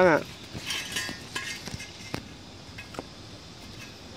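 Short offcuts of square steel box tubing knocking and clinking against each other as they are picked up and set down on dirt: a handful of light, separate knocks, the sharpest about two seconds in.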